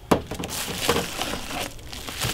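A seasoning shaker bottle knocks down onto a stainless-steel table, then a bag crinkles and rustles as a hand rummages in it.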